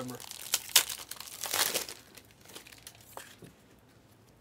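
Foil trading-card pack wrapper crinkling and being torn open, loudest in the first two seconds. Quieter rustles and a couple of small clicks follow.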